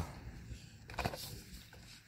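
Faint handling noise with a couple of light clicks about half a second and a second in, as hands grip a wheel of a small plastic RC buggy and turn the car.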